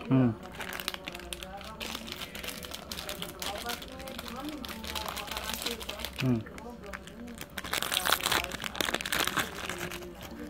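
Plastic Oreo cookie wrapper crinkling as it is handled, in two crackly spells, one early and a longer one near the end, with a man murmuring "hmm" twice in between.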